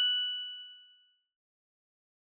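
A single bright ding sound effect: a struck chime tone with a few ringing pitches that fades away over about a second.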